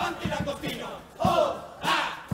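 Male murga chorus shouting together in a loud group yell, over a few bass drum and snare strikes, with a strong hit near the end.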